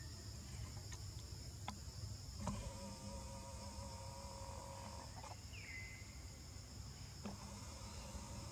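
Forest insects droning steadily at a high pitch. Partway through, a lower drawn-out call runs for about two and a half seconds, followed by a short falling whistle.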